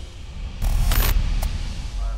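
Edited sound effect: a sudden loud whoosh of noise over a deep boom about half a second in, lasting about half a second, then a short click, with a low rumble lingering.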